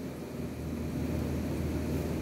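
Steady low hum and rumble of room background noise, with no distinct strokes or events.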